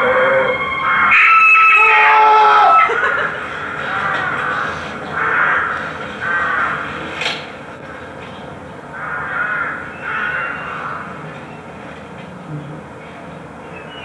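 Crows cawing repeatedly, with pauses between calls, in an outdoor winter film ambience. About a second in comes a loud held tone that steps down in pitch over about two seconds.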